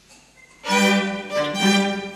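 Classical violin music with lower bowed strings beneath it, coming in suddenly a little over half a second in after faint room noise and moving through quick changing notes.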